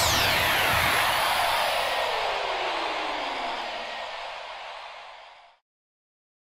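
Synthesized downward noise sweep from an electronic outro jingle: a hissing whoosh with tones gliding steadily down in pitch, fading out and cutting off sharply about five and a half seconds in.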